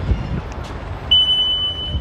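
Walk-through security metal detector giving one steady high electronic beep, about a second long, starting about a second in, as it is set off by a person passing through.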